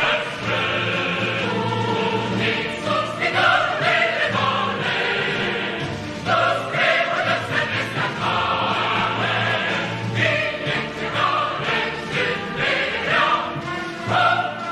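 Choral music: a choir singing long held notes in phrases over a musical accompaniment.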